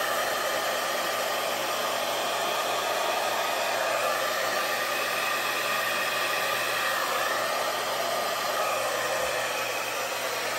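Handheld hair dryer running steadily on one setting, blowing a puddle of fluid acrylic paint outward into a bloom.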